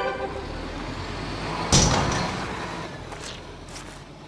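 Car sound effect: a low engine rumble with a sudden loud burst a little under two seconds in, then fading away, with a few faint clicks near the end.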